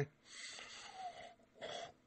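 A faint breath heard over a phone line in a pause between speakers, followed near the end by a brief faint voice from the other end of the call.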